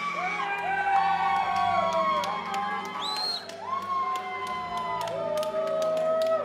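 Loud arena music with a crowd cheering and whooping over it, and a shrill whoop about halfway through.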